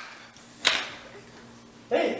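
A single sharp smack, such as a hand or body striking the tiled floor during rough play, a little under a second in; a child's voice starts near the end.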